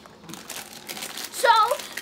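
Plastic bag of pecans crinkling as it is handled, a quick run of crackles.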